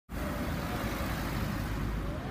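Steady low rumble of street traffic, cars running along the road.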